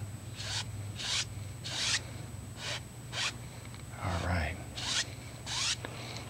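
Paintbrush swishing across wet oil paint on canvas in short strokes, about seven brushy swishes with uneven gaps, as the paint is pushed and wiggled to shape water reflections.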